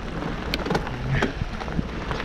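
Mountain bike rolling along a dirt trail: steady tyre and ride noise with wind rumbling on the microphone, and a sharp click about half a second in.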